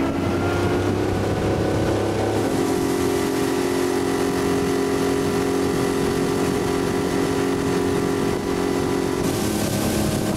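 Boat motor running steadily as the boat trolls along, its note shifting slightly about two seconds in. Wind hiss on the microphone picks up near the end.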